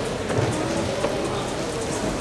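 Steady background noise of a busy, echoing sports hall, with indistinct chatter of people.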